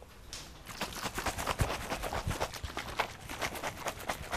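Rapid, light footsteps on a hard floor: a quick run of clicks and knocks starting under a second in, with a few heavier thumps.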